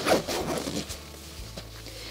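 Zipper on a Gregory Jade 53 backpack's U-shaped front access panel being pulled shut: a quick rasping run lasting about a second, followed by quieter fabric handling.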